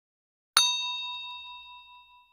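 A single notification-bell ding sound effect, struck about half a second in and ringing away over the next second and a half.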